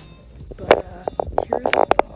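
Phone handling noise: a quick run of loud rubs and knocks against the microphone as the phone is swung around, starting a little over half a second in.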